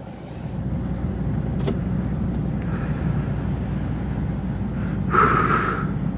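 Road and engine noise inside a moving car's cabin: a steady low rumble that builds over the first second. A short hiss comes near the end.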